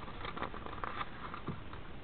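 Quiet rustling and soft light taps of a paper banknote being slid into the plastic sleeve of a banknote album.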